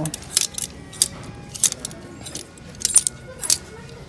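Plastic clothes hangers clacking and sliding along a metal clothing rack as garments are pushed aside one by one: a string of sharp, irregular clicks, about six in four seconds.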